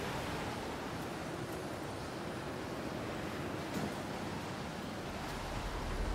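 Steady wash of sea waves with wind.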